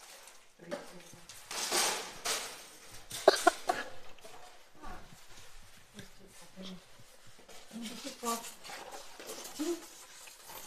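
Plastic wrap rustling and crinkling as it is peeled off a stainless-steel toaster oven, followed about three seconds in by a few sharp, briefly ringing metallic clinks from the oven's steel accessories being handled.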